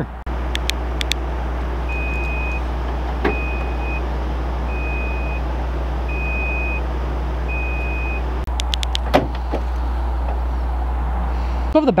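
A pickup's tailgate being lowered, with short latch clicks near the start and again about two-thirds of the way through, over a steady low hum. A high electronic beep sounds five times at even spacing, a little over a second apart.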